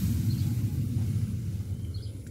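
A low, uneven outdoor rumble that eases slightly toward the end, with a couple of faint short high chirps.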